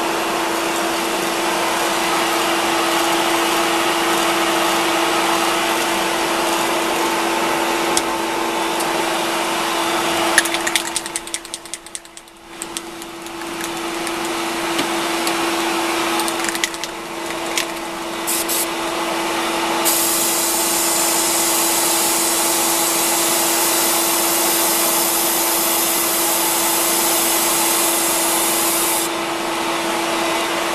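Steady electric motor noise from the running arrow-cresting setup spinning the arrow, dipping briefly about eleven seconds in. An aerosol spray paint can hisses in two short bursts about eighteen seconds in, then sprays steadily for about nine seconds, coating the spinning arrow's crown.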